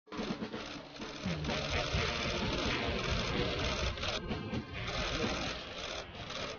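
Many press camera shutters clicking rapidly and overlapping.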